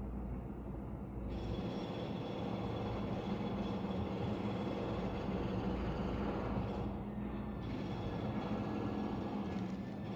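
A K-drama playing in the background: a steady rumbling noise with faint music under it, and a brighter hiss that joins about a second in and briefly drops out near seven seconds.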